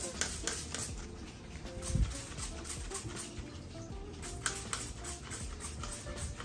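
Hand-held plastic trigger spray bottle spritzing several short bursts of insecticide onto houseplants, over steady background music.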